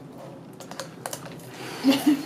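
Dry ice bubbling in warm water inside a plastic bottle: a faint run of irregular crackling clicks.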